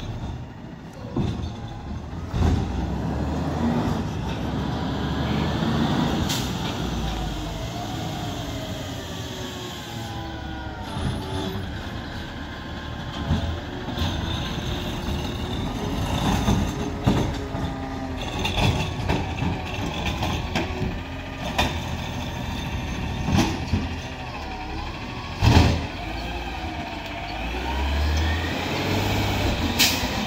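McNeilus automated side-loader garbage truck working the street: its diesel engine runs and revs with a wavering whine, air brakes hiss, and there are several sharp knocks, the loudest late on.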